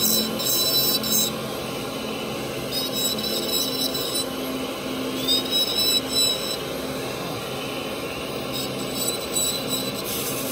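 Dental lab micromotor handpiece spinning a bur and grinding down the teeth of a stone dental model. It runs as a steady hum with a high whine that glides up in pitch twice.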